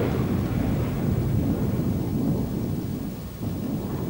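A deep, continuous rumble like rolling thunder, with no clear notes, dipping briefly a little after three seconds in.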